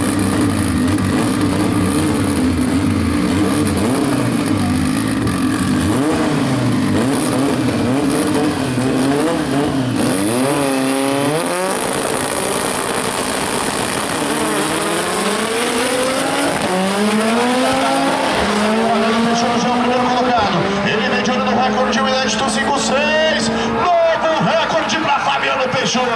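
Turbocharged Volkswagen Gol drag racing car engines. At first they are held at steady revs on the start line. Then they rev up and down sharply, and on the quarter-mile pass the engine pitch climbs again and again, dropping back at each gear change.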